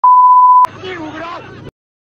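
A single loud, steady electronic beep about two-thirds of a second long, one pure high tone that stops abruptly with a click. A second of speech follows, then the sound cuts out.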